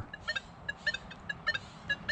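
Nokta Legend metal detector giving about a dozen short, high beeps in quick, uneven succession as its coil sweeps a pull tab with a coin beneath it, the pull tab's number notched out. It is a broken, choppy response, not a very good tone.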